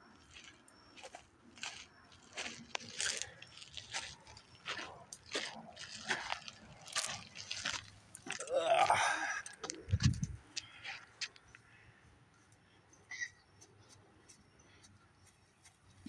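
Footsteps crunching on a gritty gravel path, about two steps a second for the first half, then thinning out. A short call from a voice is heard about halfway through, with a low thump just after it.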